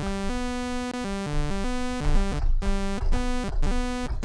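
Surge software synthesizer in Mono play mode, playing a bright sawtooth tone. Several keys are held, but only one note sounds at a time, so the pitch steps from note to note. In the last second and a half it plays short, separate notes with small gaps between them.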